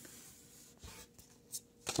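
Pokémon trading cards being handled and laid down on a wooden table: faint rustles and light clicks, with one sharper tap near the end.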